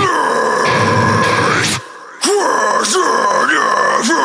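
A sparse passage of a deathcore song: electric guitar notes swooping up and down in pitch over and over, without the heavy low end. The sound drops out for a moment about two seconds in.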